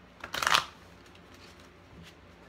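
A deck of cards being handled: one brief rustle of cards about a quarter second in, lasting about half a second.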